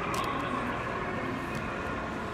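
Steady background noise of a shopping mall's interior, an even hum with no distinct events.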